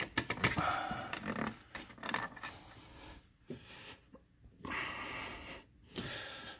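A man breathing hard with effort while pulling on a TV hung on a full-motion wall mount, with rustling and a few knocks from handling. The breathing comes in two long stretches, with short pauses about three and four seconds in.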